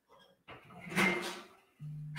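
A brief scraping rustle of metal parts of a steel-drum smoker being handled, strongest about a second in, followed near the end by a man's short low hum.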